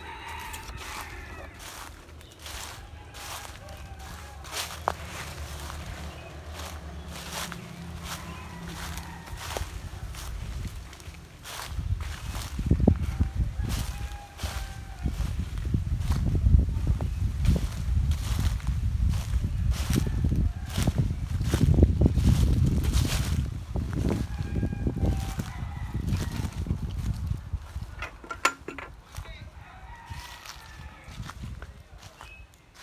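Footsteps crunching through dry fallen leaves on the ground. From about twelve seconds in until near the end, a heavy, irregular low rumble covers them.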